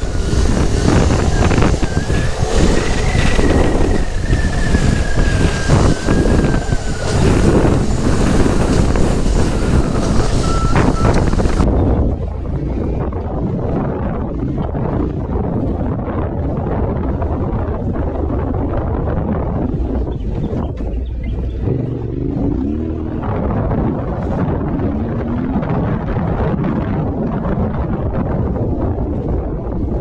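Yamaha Ténéré 700 motorcycle's parallel-twin engine running under way, heavily mixed with wind buffeting the microphone. About twelve seconds in, the sound changes abruptly and the hiss drops away. Later the engine note rises and falls a few times.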